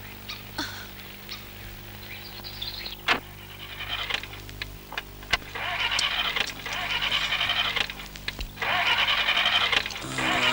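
A car's starter motor cranking in four whirring bursts over the second half, with short pauses between tries and the engine not catching. A mechanic later puts the failure down to a dynamo that isn't working. Before the cranking there are a couple of sharp clicks.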